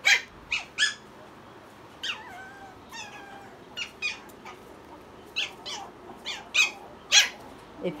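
Eight-week-old Pomeranian puppies yipping and squeaking during play: about a dozen short, high-pitched calls, some sliding down in pitch.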